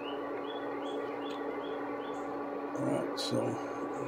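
Silicone spatula stirring a simmering cream sauce in a pan, with light scraping strokes about two or three a second that fade out after two seconds. Under it runs the steady hum of an induction hot plate.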